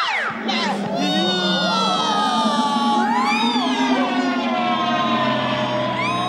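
Children's TV sound effects over music: a falling swoop at the start, then held synth notes that slowly sink, with wobbling tones above them and a rising swoop about three seconds in.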